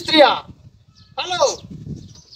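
A goat bleating twice: a wavering call that ends about half a second in, then a shorter call about a second in that falls in pitch.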